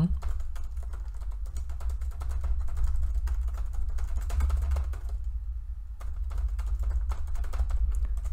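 Typing on a computer keyboard: a quick run of keystrokes with a short pause about five seconds in, over a steady low hum.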